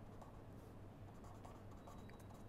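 Faint scratching of a felt-tip marker writing letters on paper: several short, irregular strokes over a steady low room hum.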